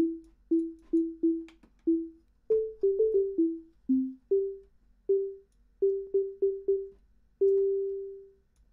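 Harmor synth playing a plain sine-wave pluck: short single test notes in quick succession, each starting with a faint click and dying away quickly, mostly on one or two pitches with a few lower and higher ones. Near the end one note rings longer.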